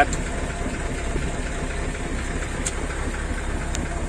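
An engine idling steadily, with a couple of faint ticks.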